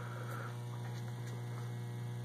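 A steady low hum, even in level throughout, with nothing else heard.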